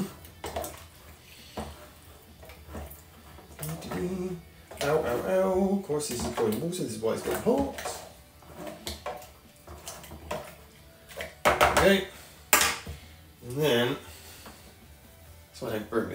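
A spoon stirring and scraping inside an empty metal malt extract tin of hot water, with irregular clicks and knocks of the spoon against the tin walls, loudest a little past the middle.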